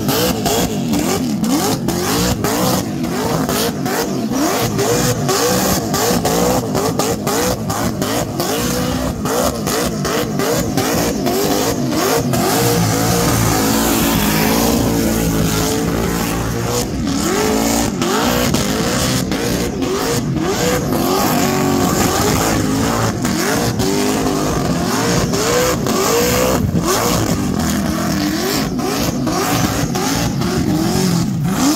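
Supercharged Holden Torana's engine revving hard during a burnout, its pitch climbing and dropping over and over, roughly once or twice a second, held steadier for a few seconds in the middle, over the noise of the spinning rear tyres.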